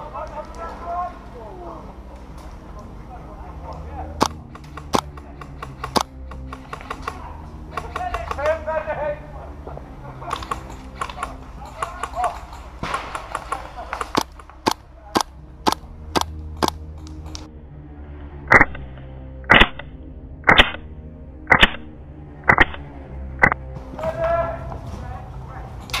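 Airsoft guns firing: scattered shots from around the field, a quick run of shots about halfway through, then about six louder single shots a second apart near the end, just before the shooter reloads.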